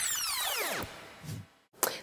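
An editing sound effect: a sweeping whoosh with many pitch lines that rise and then fall away, fading out about a second in.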